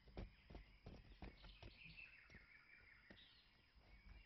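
Near silence: faint outdoor ambience with soft bird chirps and a few faint ticks.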